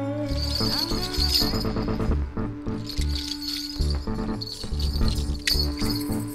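Live band music with a rhythmic electric bass line and percussion.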